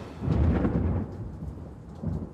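A deep, rumbling boom, a cinematic hit effect under a title card, swelling about a quarter second in and dying away over the next second and a half.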